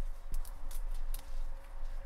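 Pruning secateurs snipping through Phragmites reed stems close to the ground: several short, sharp clicks over a low, steady rumble.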